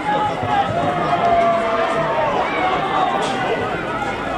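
Men's voices shouting and calling out on an open pitch, with one long drawn-out shout about a second in.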